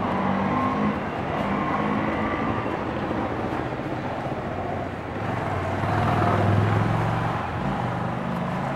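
Street traffic noise: a steady hum of vehicles with a low engine sound that grows loudest about six to seven seconds in, as a vehicle passes.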